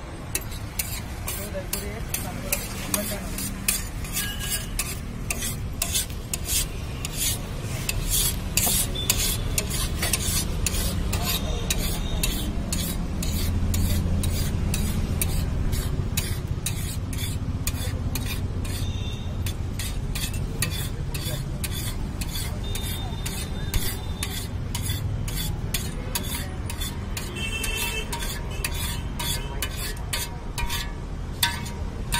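Steel spatula scraping and stirring a hot chaat mixture on a flat steel griddle in rapid repeated strokes, with the food sizzling.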